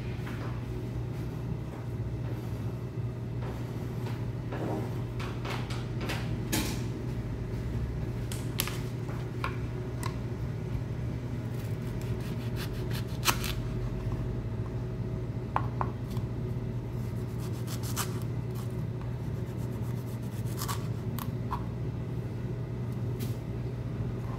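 Irregular knocks and clicks of a kitchen knife cutting a leek on a plastic cutting board, over a steady low hum.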